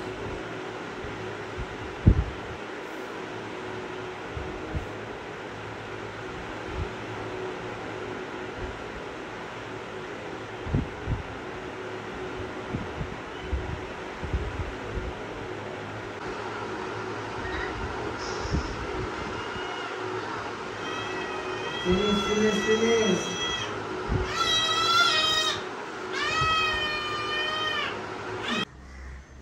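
Ginger Persian kitten meowing, three drawn-out, high-pitched meows near the end, while it is held down for an ear cleaning at the vet. A sharp knock about two seconds in.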